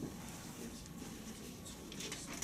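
Quiet room noise with faint rustling and scratching, and a small click right at the start.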